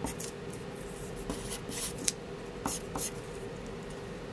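Felt-tip marker writing on a sheet of paper on a tabletop: a series of short, separate strokes, over a steady low hum.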